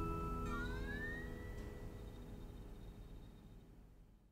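Steel-string acoustic guitar letting its last chord ring out and fade away, as the song ends. About half a second in, a high note slides upward in pitch and then holds while everything dies down.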